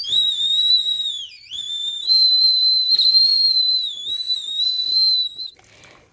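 Stainless-steel milk cooker whistling on a gas burner: one steady high whistle that wavers a little, dips sharply in pitch about one and a half seconds in, then recovers and stops about half a second before the end. The whistle is the steam escaping from the cooker's water jacket as it boils, the sign that the milk is heated through.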